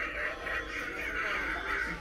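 An animatronic Halloween jack-o'-lantern prop playing its spooky soundtrack: eerie music with creature-like voice effects. The sound cuts off suddenly at the end.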